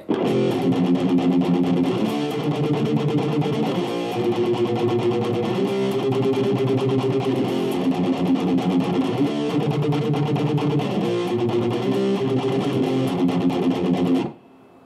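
Electric guitar with a driven, distorted tone, a Les Paul-style solid body, chugging a steady rhythm of power chords. The chords change every second or two through the progression.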